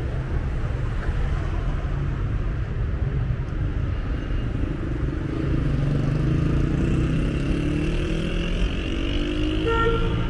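City traffic: a steady low rumble of car engines and tyres, with a vehicle accelerating past in the second half, its engine pitch rising. A brief tone sounds near the end.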